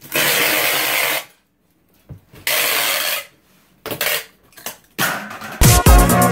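Packing tape ripping and rubbing against a cardboard box, in four separate strokes of up to about a second, with short pauses between them. Music comes back in near the end.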